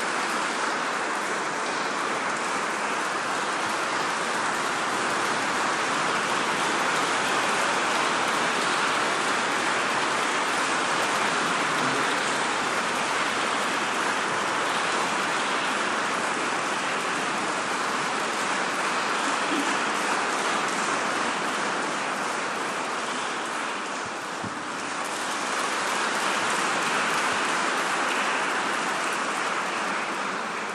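A large audience applauding in a big stone basilica: dense, steady clapping that dips briefly near the end and then swells again.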